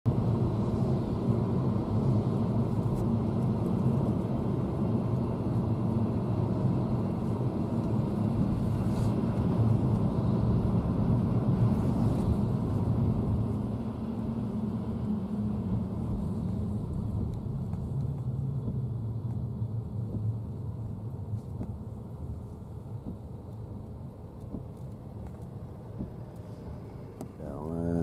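Car cabin road noise: a steady low rumble of engine and tyres while driving, growing gradually quieter over the second half.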